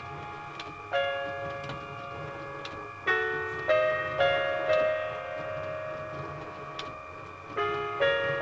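Recorded solo piano music from the LEGO Powered Up app, played slowly: chords are struck about a second in, then several in quick succession around three to five seconds in, and again near the end, each left to ring out and fade.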